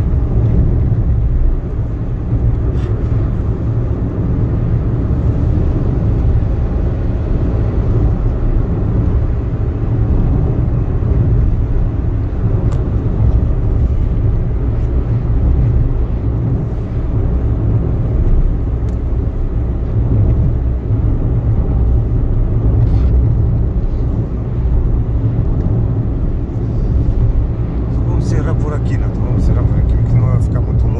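Steady low rumble of a car's engine and tyres heard from inside the cabin while driving along a highway, with a few faint clicks.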